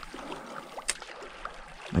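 Creek water running steadily, with a single sharp click about a second in.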